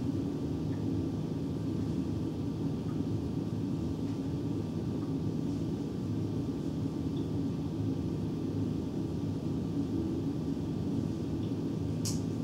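Steady low rumble of room noise with a faint, thin, steady tone above it, unchanging throughout.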